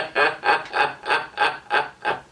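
A man laughing out loud, a steady run of about seven 'ha's at roughly three a second.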